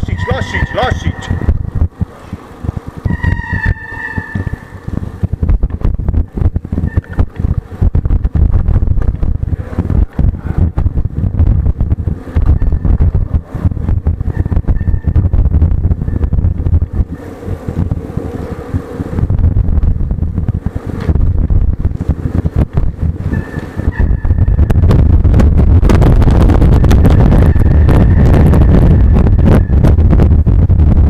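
A vehicle driving through an unlit rock tunnel: a loud low rumble of engine and tyres, with many knocks from the rough road surface. It turns louder and steadier over the last several seconds as the vehicle nears the exit.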